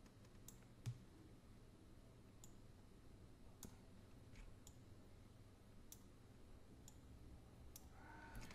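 Faint computer mouse clicks, a handful of single clicks spread out over near silence, as the mouse grabs and drags image corner handles.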